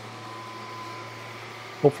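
Steady low hum with a thin, steady high-pitched tone over it: background fan or machine noise. A man's voice starts near the end.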